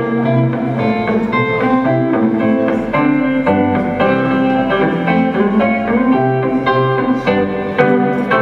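Gretsch hollow-body electric guitar played fingerstyle through an amplifier: a flowing run of plucked melody notes over lower bass notes.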